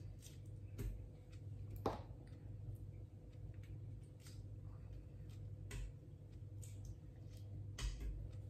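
A knife cuts pineapple over a blender jar, and the pieces drop into it, giving soft, irregular clicks and taps. The clearest one comes about two seconds in. A steady low hum runs underneath.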